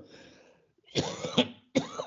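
A man coughs twice: once about a second in, then again near the end.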